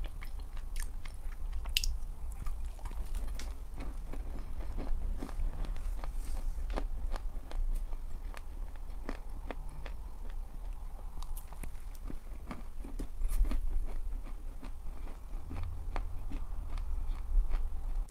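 Close-miked biting and chewing of pressed edible chalk, with many small crackles and clicks throughout. The chalk is very soft and mushy and sticks to the teeth.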